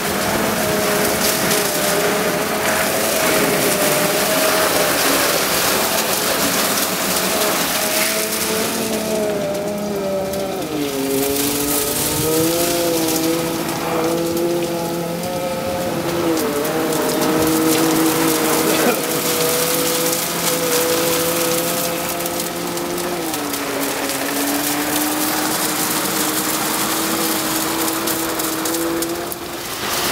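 Bitimec single-brush wash machine at work: its spinning brush and spray nozzles hiss and splash water against a motorhome's side, over a steady motor hum that shifts in pitch a few times.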